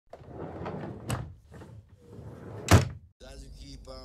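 A door slamming hard, the loudest sound, about three-quarters of a second before a sudden cut, with a lighter knock about a second in over a noisy background. A voice starts just after the cut.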